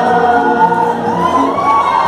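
A man singing a Hindi song into a microphone over a PA, holding long notes, with a rise in pitch about a second in.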